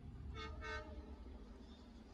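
Train horn giving two short toots close together, each about a quarter-second, over a steady low rumble.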